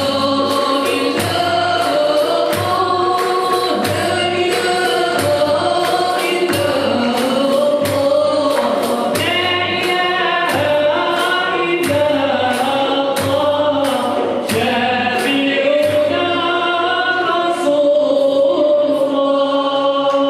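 Andalusian music: a chorus of men singing together, with violin, oud and hand drums keeping a steady beat.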